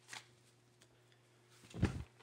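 Handling noise: a short rustle just after the start and a louder rustle with a dull bump near the end, over a faint steady hum.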